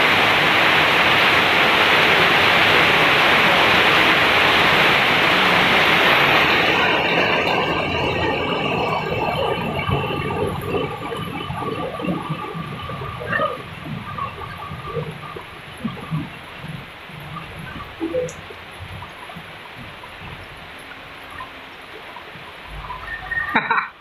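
Heavy rain pouring down, a loud, even hiss that drops away sharply about six seconds in. After that a much quieter background with scattered short sounds.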